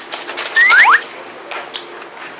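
Three quick rising whistle-like glides about half a second in, of the kind a variety show adds as a cartoon sound effect, over a rapid patter of light clicks. A couple of single clicks follow.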